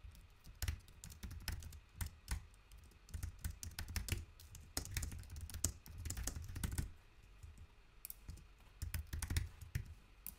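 Computer keyboard typing, faint, in quick runs of keystrokes with a short lull about seven seconds in.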